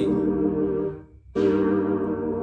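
Roland E-09 keyboard playing a held chord that is released just before a second in. After a short gap the chord is struck again and held.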